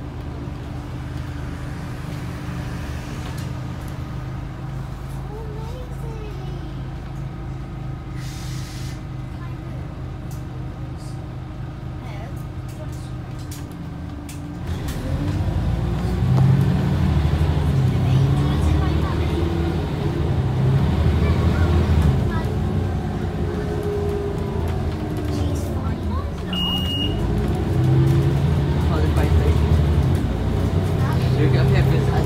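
Scania OmniCity bus's diesel engine heard from inside the cabin: a steady low hum for about the first half, then the engine gets louder and pulls away, its pitch rising and falling as the bus accelerates through the gears. A short high beep sounds near the end.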